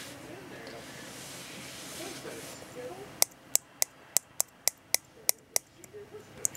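A finger tapping a small plastic spider-shipping vial, about four sharp clicks a second for a couple of seconds, to coax a stubborn tarantula sling out of it. The tapping is preceded by faint handling rustle.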